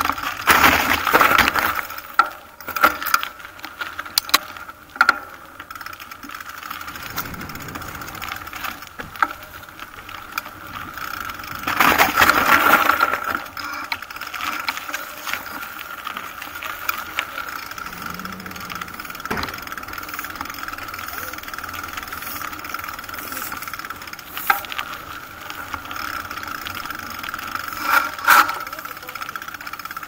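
Riding noise from a bicycle on a rough, slushy park path: rattling and a steady high hum, with loud rushes of wind on the microphone about a second in, around the middle, and near the end.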